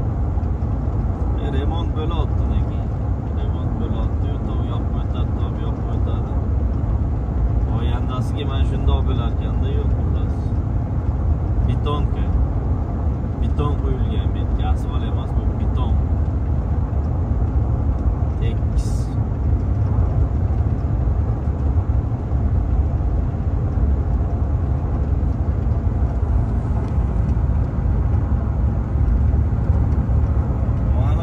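Steady low road and engine rumble heard inside a Toyota SUV's cabin while cruising on a highway.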